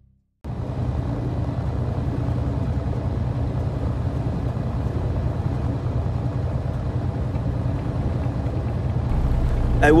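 Steady low engine and road rumble heard inside a moving truck's cab, cutting in suddenly about half a second in.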